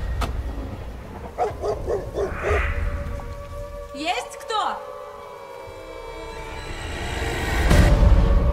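Horror trailer sound design: a low rumble with eerie voice-like pulses and sweeping pitch glides, then a sustained chord that swells and ends in a loud hit near the end.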